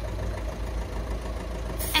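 A steady, low engine-like hum, with no distinct event over it.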